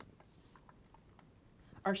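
Faint, irregular light clicks of typing on a computer keyboard.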